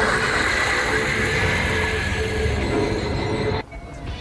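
A vampire's long, harsh shriek that cuts off suddenly about three and a half seconds in.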